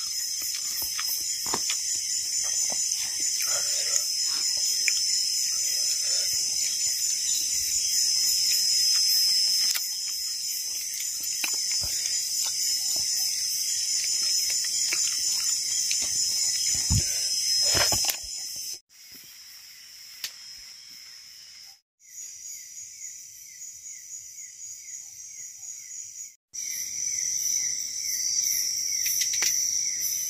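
Tropical night insect chorus of crickets and other insects: a dense, steady high-pitched shrill with a fast pulsing trill on top. During the first part there are soft small clicks and rustles of fingers working rice on an enamel plate. The chorus cuts off abruptly a few times in the second half and comes back loud near the end.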